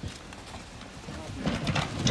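A coffin knocking and scraping against the edges of a concrete tomb as several men lower it by hand, with feet shuffling. The thuds grow busier in the second half.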